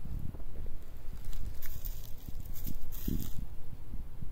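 Uneven low rumble on the microphone with rustling, and a cluster of short crackles in the middle.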